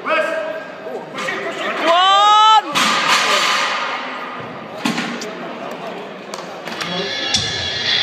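Spectators at a powerlifting bench press yelling encouragement: a short shout at the start, then one long loud shout about two seconds in, followed by a wash of cheering. Music comes in near the end.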